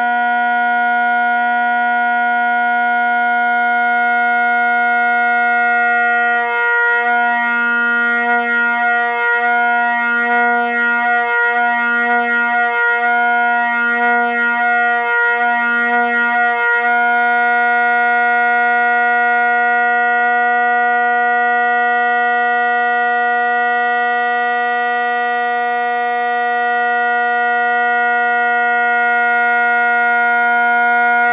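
Two tenor drones of a Highland bagpipe sounding together as one steady, buzzy low note. From about six to seventeen seconds in, the note pulses slowly in loudness several times, beating as the drones drift slightly apart in tune while one is being slid along its adjustable stock. After that it holds steady again as the drones lock in tune.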